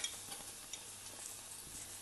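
Chopped onions frying in oil in a kadai, a soft steady sizzle with a faint spatula click at the start and a few light ticks.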